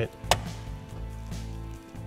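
A single sharp plastic click about a third of a second in, as the third brake light bulb socket is seated in its housing and turned, over a quiet steady music bed.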